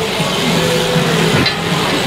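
Fleeces rustling and crunching in a woven woolsack as someone stands in it and tramples the wool down to pack the bag full, a steady noisy rustle.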